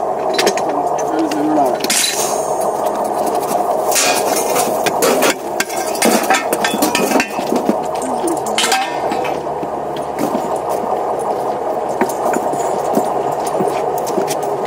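Metal clinks and knocks of hand tools and clamp parts against a steel rail as a thermit-welding mould is fitted, over a steady mechanical hum and workers' voices.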